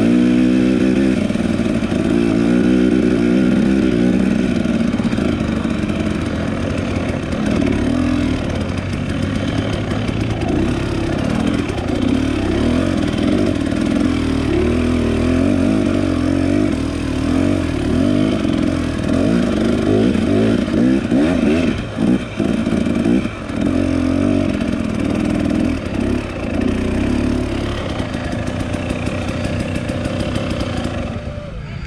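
Husqvarna dirt bike engine running under constantly changing throttle, its pitch rising and falling as the rider accelerates and backs off along the trail, with a couple of brief dips as the throttle is chopped about two-thirds of the way through.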